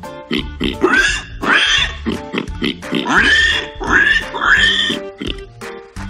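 Several short pig-like animal calls, each rising then falling in pitch, played as the warthog's sound over steady children's background music.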